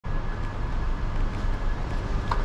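Steady low rumble of parking-garage background noise, with a faint thin high tone held over it.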